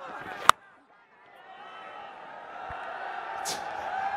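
A cricket bat strikes the ball once with a sharp crack, then stadium crowd noise swells as the edged shot runs away toward the boundary.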